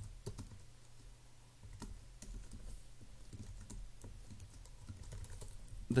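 Typing on a computer keyboard: faint, irregular key clicks over a low steady hum.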